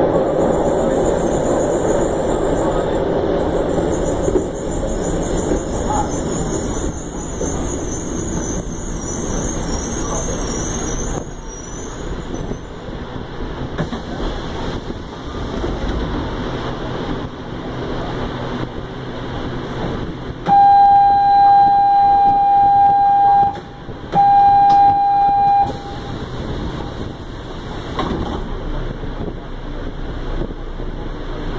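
Inside a subway car: the train runs with a loud rumble and a high-pitched metallic squeal for about the first twelve seconds, then goes quieter as it stands. About twenty seconds in, the door-closing warning sounds as two long electronic beeps, the first about three seconds, the second about two.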